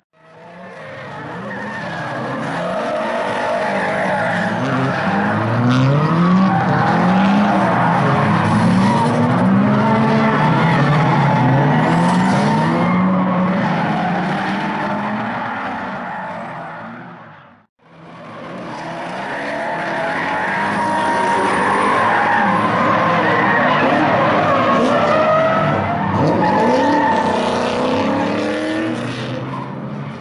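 Drift cars sliding, with engines revving up and down in repeated rising and falling sweeps and tyres squealing and skidding. The sound fades out and back in a little past halfway, then the same mix of revving and squeal carries on.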